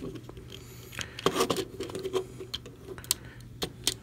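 Plastic parts of a Mastermind Creations R-11 Seraphicus Prominon transforming figure clicking and rattling as it is handled, with a scattering of small clicks while its arms are worked free from behind a panel. A faint low hum runs underneath.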